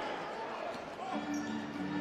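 A basketball being dribbled on a hardwood court over general arena noise. About halfway through, a steady low held tone comes in.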